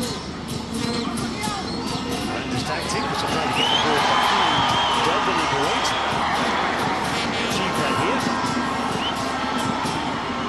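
Stadium crowd noise at a football match: many voices shouting together. It swells about three seconds in and stays loud.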